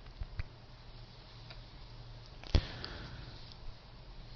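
Quiet pause in a recorded talk: faint steady low hum of the room and recording, with a few soft clicks and one short, sharper sound about two and a half seconds in.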